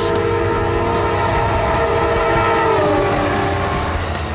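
Amtrak diesel locomotive's air horn sounding one long multi-tone chord as the train approaches, its pitch sagging and the horn stopping about three seconds in, leaving the rumble of the passing train.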